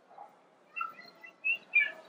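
Birds chirping: a few short, high chirps, beginning a little under a second in.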